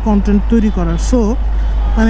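A man speaking in short phrases, over a steady low rumble from a motorcycle ride.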